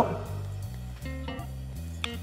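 Soft background music: plucked guitar notes over a bass line that changes note every half second or so.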